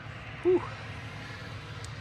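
A woman's short exclamation, 'whew', over steady low outdoor background noise.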